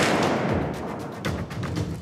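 A single .45-70 rifle shot right at the start, its report echoing and dying away over the next two seconds. Dramatic music with drum hits plays underneath.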